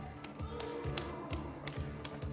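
Tense film score with a pulsing low beat, over quick footsteps tapping on a hard floor, about three a second, as someone runs.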